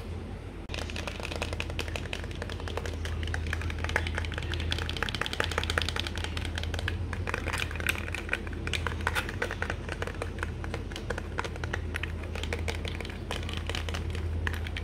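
Rapid, dense tapping on small hard objects, many taps a second and irregular like typing, over a low steady hum.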